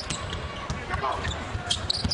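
Basketball being dribbled on a hardwood arena court, short bounces repeating, with brief high-pitched sneaker squeaks and arena crowd murmur behind.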